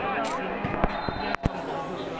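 Spectators chattering, with a few sharp thuds of a volleyball being struck, the loudest about a second and a half in.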